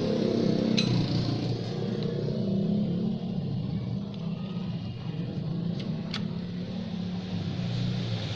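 An engine running steadily with a low rumble, with two short clicks, one about a second in and another about six seconds in.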